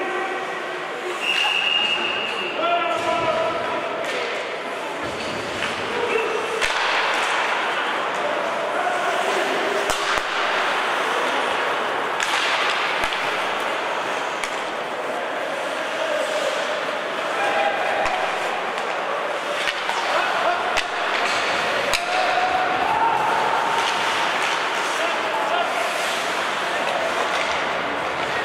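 Live ice hockey in an indoor rink: shouted calls from players and spectators ring out in the hall over a steady hiss of skates on ice. A few sharp clacks of sticks and puck come through, around 10, 12 and 18 seconds in.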